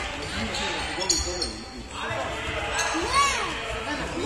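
Handball bouncing on a sports-hall floor amid children's running feet and calls, echoing in the large hall. A short high squeak comes about three seconds in.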